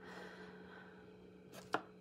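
Faint steady electrical hum of the room, with a single sharp tap a little past halfway, like something small set down on a table.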